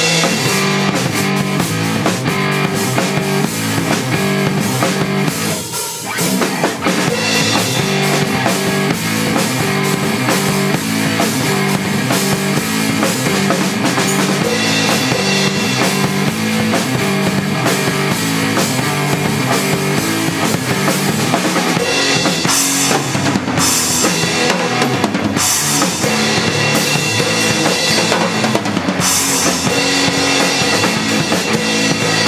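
A rock band jamming: an acoustic drum kit played hard, with kick drum, snare and cymbals, over amplified guitar playing steady, changing notes. The playing drops briefly about six seconds in, then carries on.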